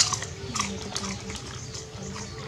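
A dog snapping up a crunchy snack from a hand and chewing it: a sharp click at the start, then a few short crunches about half a second to a second in.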